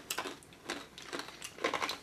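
Mouth sounds of people chewing chewy sour candy: a run of small wet clicks and lip smacks.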